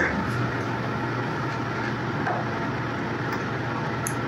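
A steady low hum under an even hiss, with no distinct event standing out.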